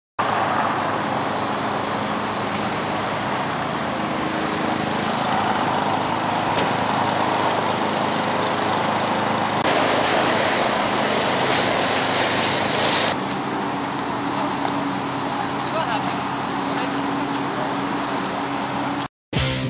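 Outdoor street sound: steady road traffic noise with indistinct voices. It changes abruptly at picture cuts, and is louder and brighter for about three seconds from near the ten-second mark.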